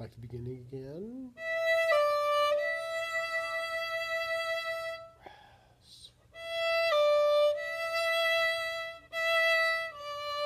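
Violin playing slow, long bowed notes: mostly one high note held, stepping briefly down a tone twice, with a pause in the bowing about halfway through. The high note is played in third position with the second finger.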